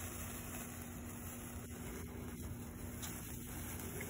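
Faint, steady fizzing hiss of a burning hand-held sparkler, with a steady low hum underneath.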